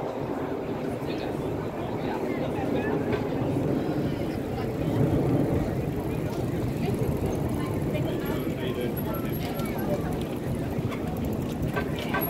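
Outdoor crowd hubbub: many people talking indistinctly while a stream of bicycles rolls past, with occasional small clicks and rattles.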